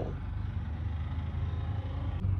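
Steady low background hum with a faint even hiss above it, with no speech.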